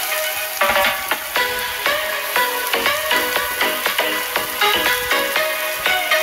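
Background music with a steady beat of changing notes, over the hiss of chopped onions sizzling in hot oil in a frying pan.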